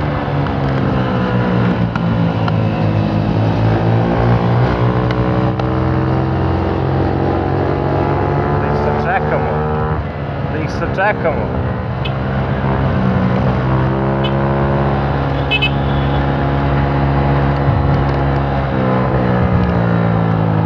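Small four-stroke scooter engine running under way, heard from the rider's seat, its note rising and falling several times as the throttle is eased and opened again.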